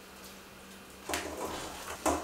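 Hot cauliflower florets tipped from a glass bowl into a stainless steel frying pan of sauce. They land suddenly about a second in, followed by about a second of soft noise as they settle into the pan.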